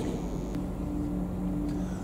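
Steady low background hum with a faint held tone; no distinct event.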